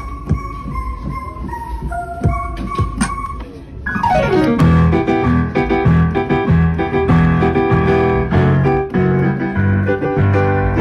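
Digital piano playing a pop tune: a sparse single-note melody over the keyboard's drum hits, then a quick downward glissando about four seconds in that leads into louder, fuller chords with a bass line.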